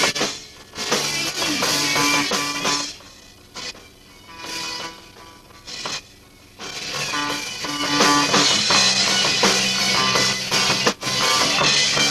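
Live rock band of guitars, bass and drums, caught on a camcorder microphone: the band drops to a quiet, sparse passage with a few held notes, then the full band comes back in about six and a half seconds in and plays on at full level.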